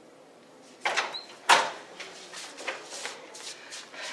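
A classroom door opening as someone comes in: a clatter about a second in, a loud knock about half a second later, then a string of lighter knocks and taps.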